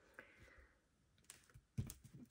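Faint taps and a soft paper rustle as planner stickers are pressed down by hand onto the page, with a sharper click near the end.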